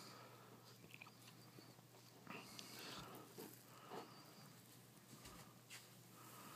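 Near silence: quiet room tone with a few faint, soft handling noises, about two to four seconds in.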